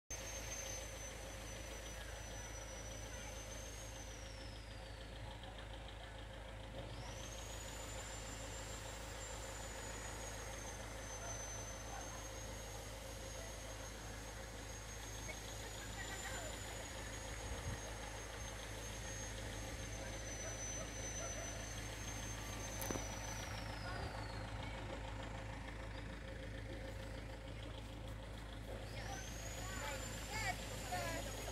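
A steady low mechanical hum with a thin, high, wavering whine above it. The whine slides down and drops out twice, then comes back.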